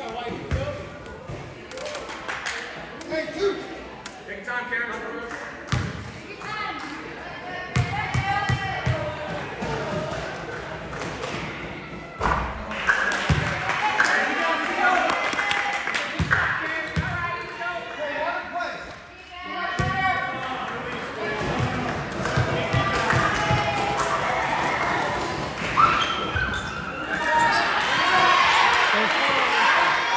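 A basketball bouncing on the hardwood gym floor, several short thuds at a time, amid chatter and shouts from players and spectators in a large, echoing gym.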